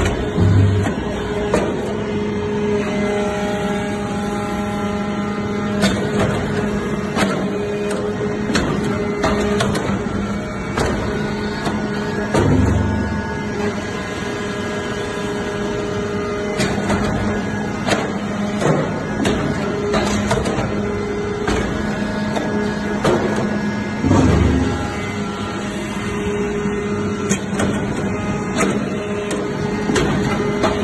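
Hydraulic briquetting press for metal powder running: a steady hydraulic pump hum with continual mechanical clicking and clatter, and a deep thud three times, about every twelve seconds, as the press cycles.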